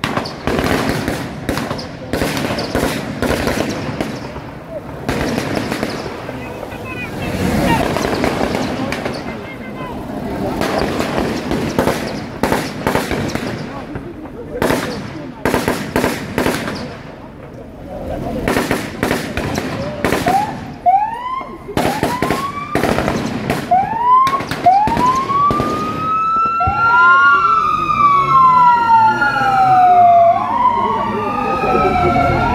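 Police car sirens starting about two-thirds of the way in as short rising whoops, then two or more sirens wailing over each other as the cars approach. Earlier, repeated sharp bangs like shots ring out over crowd chatter.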